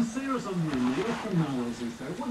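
A voice making drawn-out, wordless sounds whose pitch rises and falls.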